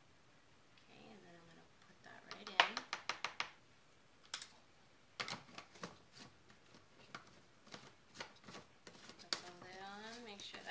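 Light clicks and taps as a matcha scoop, tea tin and shaker are handled: a quick run of about seven taps a couple of seconds in, then scattered single clicks. A faint voice murmurs about a second in, and talking starts near the end.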